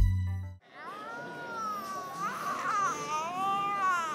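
A music track with a heavy bass beat cuts off about half a second in. A high-pitched wailing voice follows, in long drawn-out cries that glide up and down in pitch.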